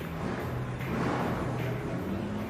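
The Dodge Tomahawk's 10-cylinder, 8-litre Dodge Viper engine running, a steady low drone under a broad exhaust noise that swells about a second in.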